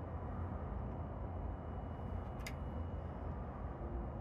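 Steady low rumble of outdoor background noise, with one short faint click about halfway through.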